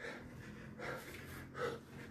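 A man repeatedly striking his own chest and face with his hands in a subak body-conditioning drill, each strike paired with a sharp forced breath. The strikes come steadily, about one every 0.8 seconds, three in all.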